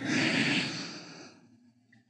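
A man's long, breathy sigh that fades out about a second and a half in.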